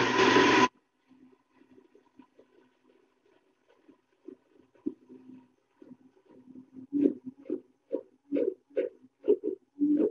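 Almond Cow nut milk maker's motor and blades running a blending cycle on soaked cashews, coconut and water, opening with a loud burst of noise in the first second. After a few faint, choppy seconds it comes back in short dull pulses, about two a second, from about seven seconds in.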